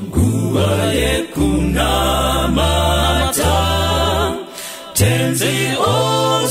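A choir singing a hymn in Shona, the phrases broken by short breaths about a second in and again shortly before five seconds.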